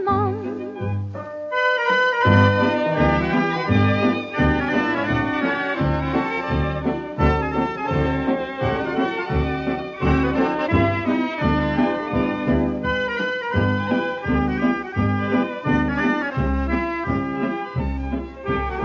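Instrumental break of a foxtrot dance-band record: a dance orchestra plays over a steady, even bass beat, with no singing. The sound is dulled above the mid-treble, as from an old 78 rpm disc.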